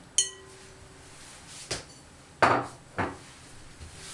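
A metal spoon clinking and knocking against a glass mixing bowl while working soft butter: a sharp clink that rings on briefly just after the start, then a few separate knocks, the loudest about two and a half seconds in.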